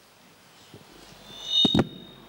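Quiet room tone in a conference hall, then about a second and a half in a microphone is bumped: two sharp thumps with a low rumble, under a faint high whistle from the sound system.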